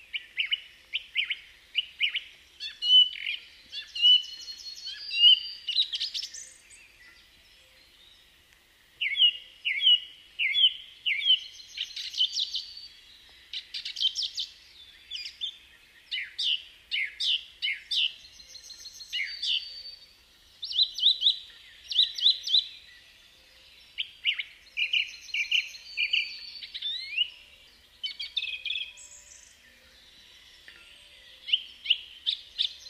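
Songbirds singing in bouts of quick chirps, trills and downward-sweeping notes, with a pause of a few seconds about six seconds in.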